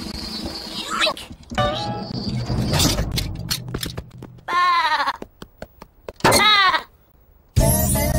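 A cartoon lamb's voice bleating twice over light background music, one short bleat about halfway through and another a second and a half later.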